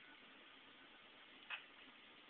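Near silence: a steady faint hiss, with a single short click about one and a half seconds in.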